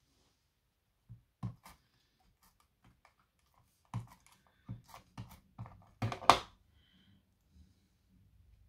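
Plastic tape runner rolling adhesive onto a small paper strip and being handled on a cutting mat, giving a string of sharp clicks and taps. The loudest comes about six seconds in.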